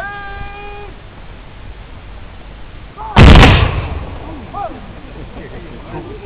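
A company of reenactors' muzzle-loading muskets fired together in a single volley about three seconds in: one loud crash lasting about half a second, trailing off over the following second. Just before it, in the first second, a long drawn-out shouted command.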